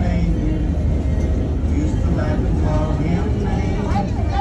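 Steady low rumble of a moving excursion train, heard from on board, with voices and music faintly in the background.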